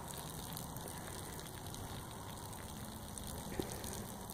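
Low, steady outdoor background noise with no distinct source, and one faint tap a little past three and a half seconds in.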